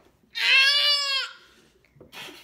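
A toddler's single whiny cry of protest, one high wail about a second long, refusing the food held out to her.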